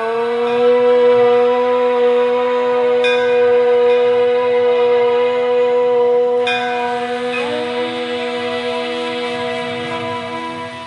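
A woman's voice chanting one long, sustained "Om" on a steady pitch as part of a three-fold Om chant. It sits over soft background music, with a chime struck twice.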